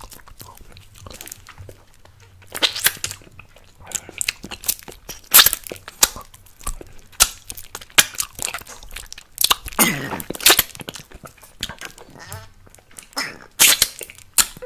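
Close-miked wet mouth sounds of licking and sucking an apple-flavoured lollipop: irregular smacks, clicks and slurps, with a longer slurp about ten seconds in.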